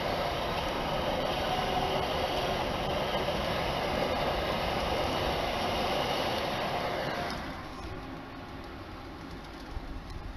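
Passenger train passing on the line below, a steady rolling rumble of wheels on track that fades away about seven seconds in.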